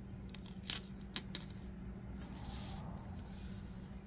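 Planner stickers and paper being handled on a tabletop: a few light clicks, then a longer scratchy rustle about two seconds in, like sticker paper being peeled or smoothed down.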